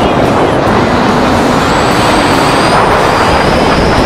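Loud, steady rush of airflow buffeting the camera's microphone during a tandem parachute descent.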